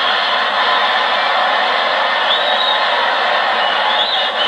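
Large theatre audience laughing and applauding steadily, with a short whistle a little past halfway through.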